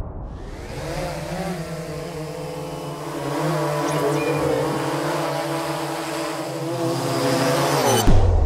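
Quadcopter drone's motors and propellers humming steadily, with slight wavers in pitch, then cutting off suddenly.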